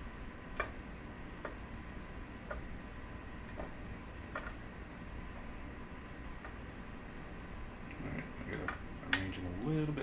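Light, irregular clicks and taps of zucchini slices being set down on a plastic food-dehydrator tray, roughly one a second, coming faster near the end.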